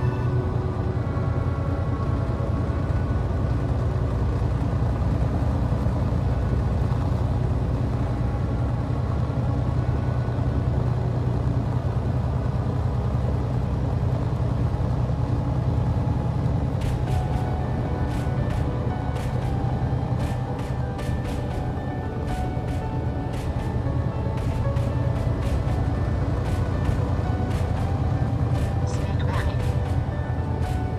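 Background music with sustained tones; a percussive beat joins about halfway through.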